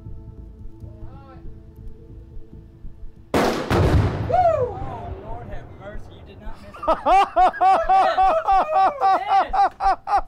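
A faint steady hum from the hovering drone cuts off about three seconds in at a loud blast: the rifle shot and the Tannerite-packed drone exploding, fading over about a second. A voice shouts just after, and from about seven seconds there is continuous laughter.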